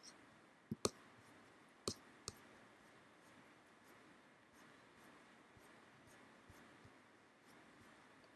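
Computer mouse clicks: four sharp clicks in the first two and a half seconds, then only faint scattered ticks over quiet room hiss.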